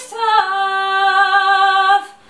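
A woman's solo singing voice: a short note, then one long held note with a slight vibrato that cuts off at the end.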